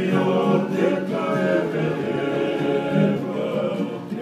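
Several men singing together in a Tongan string-band style, with strummed acoustic guitars.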